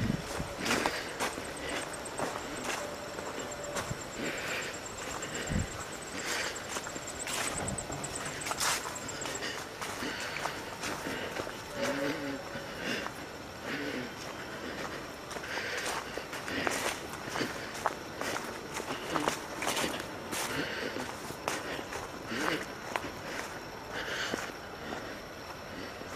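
Footsteps on a sandy trail covered in dry leaves, going on at a walking pace.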